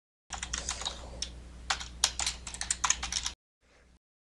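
Typing on a computer keyboard: a quick, irregular run of faint key clicks over a low steady hum, stopping a little after three seconds in.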